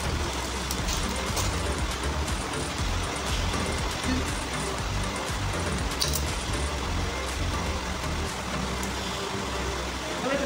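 Background music in a restaurant over a steady low rumble of room noise, with a few faint light clicks.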